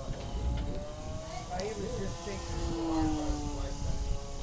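Brio radio-controlled airplane's electric motor and propeller droning overhead, the pitch sliding slowly down as it flies its pattern, with indistinct voices and a low rumble underneath.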